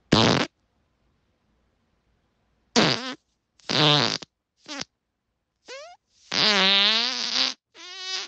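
A series of human farts, about six in all, with silence between them. There are short blasts at the start and around three to five seconds in, then a longer fart of over a second near the end whose pitch wavers.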